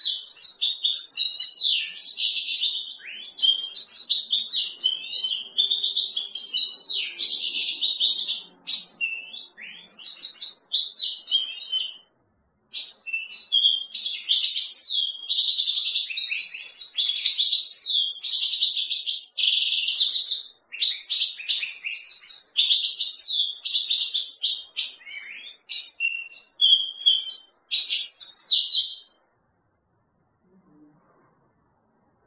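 European goldfinch singing: a long, rapid run of twittering phrases with a few short pauses, stopping just before the end.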